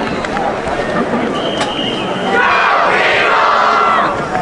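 Stadium crowd murmuring, with a high steady tone lasting about a second, then many voices shouting and cheering together, louder, for the last second and a half.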